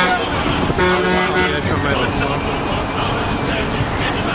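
Coaches running with voices around them, and a bus horn sounding once, a steady tone of just under a second, about a second in.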